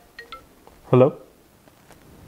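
Last few notes of a mobile phone's marimba-style ringtone, then a man answers the call with one short word.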